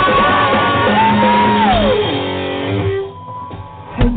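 Live rock band with electric guitar and drums playing; a long held note slides down in pitch, then the playing dies away about three seconds in, with a sharp new sound right at the end.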